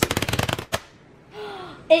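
Rapid hand slaps on a plastic bag of rice on a stone countertop, about a dozen strikes in half a second, followed by one sharp pop as the bag bursts open.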